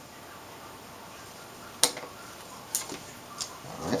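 Quiet handling sounds from gloved hands working small pieces of tape and the backlight wires on an LCD panel: three sharp, light clicks spread through the second half.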